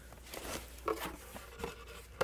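Soft rustling and a few light knocks from a packaged item being handled and lifted out of a cardboard box.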